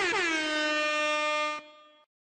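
Air horn sound effect: the tail of a run of quick blasts, each dropping in pitch, then one long blast that slides down and holds, cutting off about a second and a half in and fading away.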